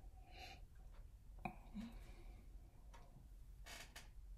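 Two faint sniffs through one nostril, near the start and near the end, as a whiskey is nosed from a tasting glass, with a single light click about one and a half seconds in.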